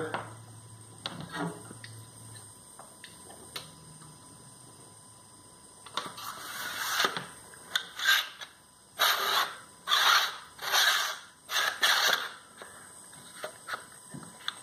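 A machete blade drawn repeatedly through the built-in sharpener of its plastic sheath: about seven scraping strokes in the second half, after a few light clicks of handling.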